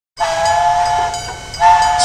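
Cartoon steam-train whistle sounding two blasts, each a steady two-note chord over a hiss. The first lasts about a second, and the second starts about a second and a half in.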